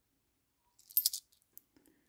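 Hong Kong ten-cent coins clinking against each other in the hand: a short cluster of metallic clinks about a second in, followed by a couple of faint ticks.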